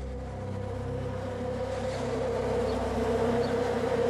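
A steady buzzing drone of several held tones that slowly grows louder.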